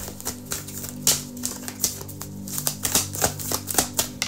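A tarot deck being shuffled by hand: an irregular run of light clicks and snaps as the cards slap against one another. Soft, sustained background music plays underneath.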